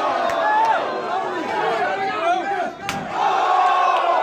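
Crowd of wrestling fans shouting over one another at close range, with a single sharp clap just before three seconds and a drawn-out collective shout near the end.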